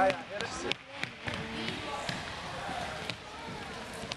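Sharp, scattered knocks of a soccer ball being kicked and feet on a hardwood gym floor, echoing in the gym under faint shouts from the players.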